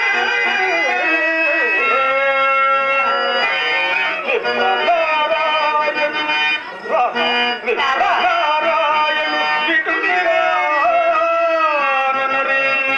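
A male voice singing a Telugu drama padyam (stage verse) in long, wavering, ornamented phrases, with a harmonium holding steady notes underneath. The singing briefly thins out about seven seconds in.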